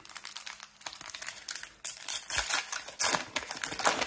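Wrapper of a Match Attax trading-card pack crinkling and tearing as it is opened and the cards are slid out. The crackling is loudest about two seconds in and again near the end.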